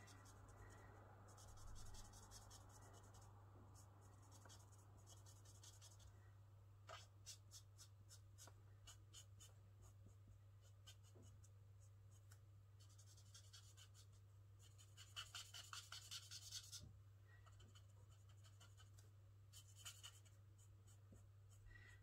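Faint scratchy strokes of a felt-tip marker colouring on cardstock, coming in several runs of quick back-and-forth strokes, over a steady low hum.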